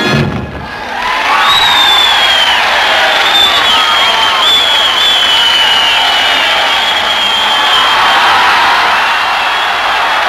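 A big-band number stops at the start, and after a brief lull a large crowd cheers and shouts, with whistles gliding over the din.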